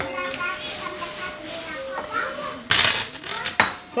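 Voices in a dining room, then a brief loud tableware clatter on a glass-topped table about three seconds in, with a smaller knock just after.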